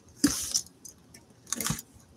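A cardboard box being handled and turned over on a tabletop: a few short scuffs and knocks, one near the start and a couple more about three quarters of the way through.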